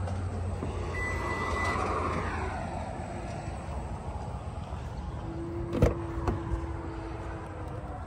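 Toyota RAV4 power liftgate running: a short warning beep about a second in and an electric motor whirring for a couple of seconds before fading. A sharp click follows a little before six seconds.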